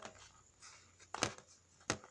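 Small plastic toy figures handled and knocked against a hard surface: three light clicks or taps, the loudest two about a second in and near the end.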